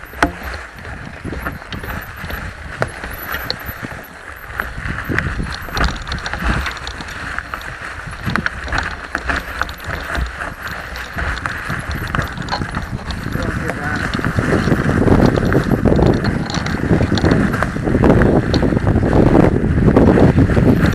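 Mountain bike rattling and clattering over a rough, rocky trail: a constant run of quick knocks from the frame, chain and wheels as the tyres hit stones and roots, growing louder in the last third.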